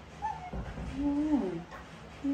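Baby macaque whimpering: a short falling squeak, then a longer plaintive call that holds its pitch and slides down at the end.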